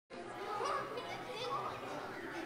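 Indistinct chatter of a congregation gathering before a service, many people talking at once with children's voices among them.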